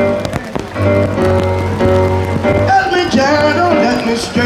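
A live reggae band plays between sung lines over a steady bass line. Rain patters on plastic rain ponchos close by.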